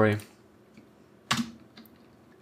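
Computer keyboard keystrokes: one sharp key press about a second and a half in, followed by a couple of faint clicks.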